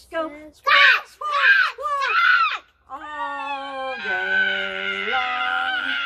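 Voices imitating seagulls with three loud, falling squawk calls, followed by a long sung line of held notes ending the gull verse of a children's song.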